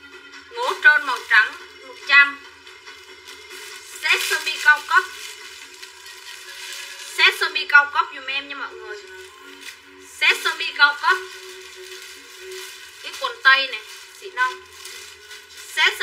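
A woman talking in short bursts, her voice thin with no bass, over a steady low tone.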